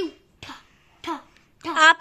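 A child coughing: three short coughs about half a second apart, then the child starts speaking near the end.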